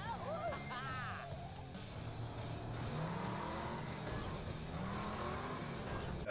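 Cartoon soundtrack of the turtles' armoured subway-car vehicle: its engine running under music from its stereo. A wavering tone sounds in the first second, and the engine's pitch rises and falls twice later on.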